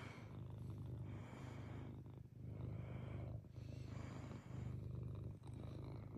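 Grey tabby cat purring close up while being stroked, in cycles about a second long with short breaks between them.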